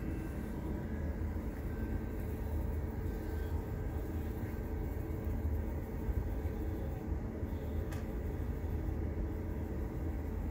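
Steady low mechanical hum with a few faint steady tones above it, unchanging throughout, and one faint click about eight seconds in.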